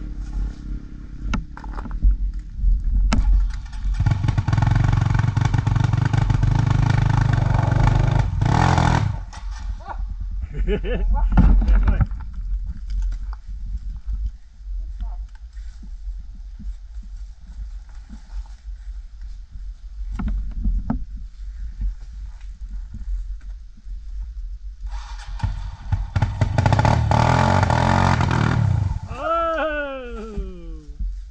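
Dirt bike engine revving hard in two long bursts, one about four seconds in and one near the end that drops away in a falling pitch, with engine rumble running low in between.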